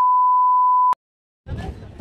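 Steady, high-pitched 1 kHz test-card reference tone, a single pure beep that cuts off abruptly about a second in. After a short silence, faint background noise comes in near the end.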